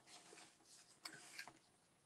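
Near silence, with faint rustling of patterned card stock being folded by hand along its score lines.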